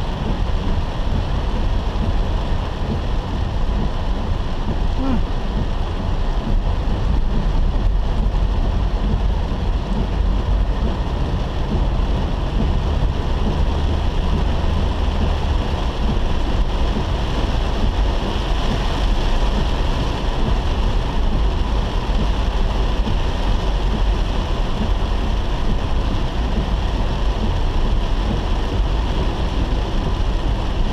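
Heavy rain falling on a car's windscreen and roof, heard from inside the cabin, over a steady low rumble of the car driving on a wet road.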